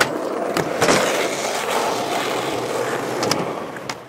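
Skateboard wheels rolling over a concrete skatepark and ramp, with a sharp clack of the board about a second in and another near the end.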